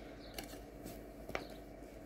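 Faint handling noises: three light clicks about half a second apart, from small objects being picked up or moved by hand, over a low steady room hum.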